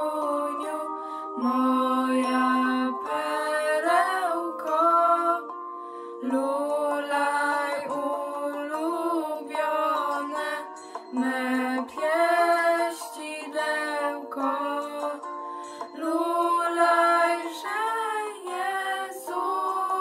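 Two girls singing a Polish Christmas carol (kolęda) together, phrase after phrase with short breaths between lines.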